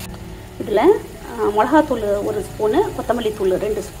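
A woman talking, starting about half a second in.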